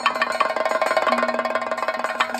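Chenda drumming: rapid, dense stick strokes on the drumhead over a steady held tone.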